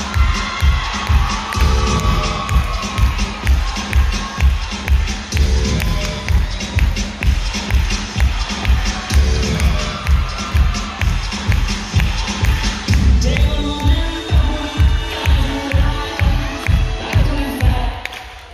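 Loud dance music with a heavy, steady bass beat played over a PA system, with the audience cheering.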